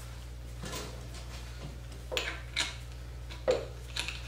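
Handling noise of fuel pickup parts being picked up and moved around on a workbench: several short, sharp knocks and clatters, over a steady low hum.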